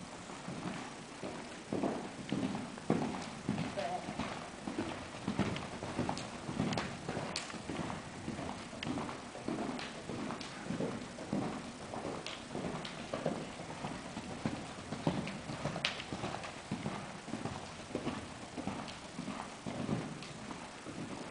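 Horse cantering on soft indoor-arena footing: a steady, rolling run of dull hoofbeats.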